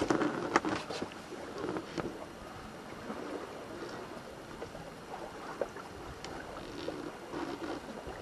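Bavaria 36 sailing yacht moving slowly under sail: a steady wash of water along the hull and wind, with a few faint knocks and clicks, most of them in the first couple of seconds.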